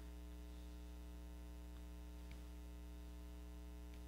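Faint, steady electrical mains hum over quiet room tone, with a couple of faint ticks a little after halfway.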